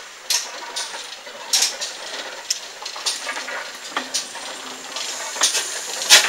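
Slow-moving steam train passing along a station platform, with a steady hiss of steam and sharp, irregular clanks from the running gear and coaches. The sound grows louder near the end as the locomotive, pannier tank No. 6412, comes alongside.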